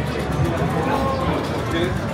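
Casino floor ambience: slot machine tones and jingles over crowd chatter, with a wavering drawn-out tone in the middle.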